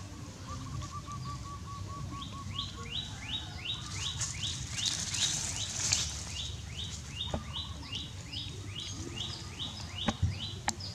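A bird calling a long, even series of short notes that drop in pitch, about three a second, starting about two seconds in. Near the start, a brief faster run of lower notes.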